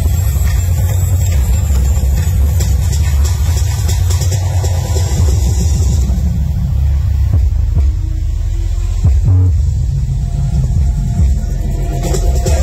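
Loud, bass-heavy show soundtrack played over a large PA system, with a deep rumble, like a car-engine sound effect, under the music.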